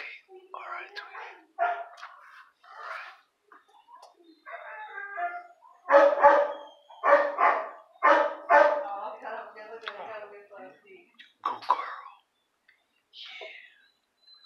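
Indistinct voices talking, loudest around the middle.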